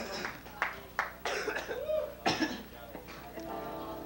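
An electric guitar plays a few notes and then holds a steady ringing note near the end, as if being tuned before the next song. Scattered short voice sounds and sharp clicks come from the stage and the crowd around it.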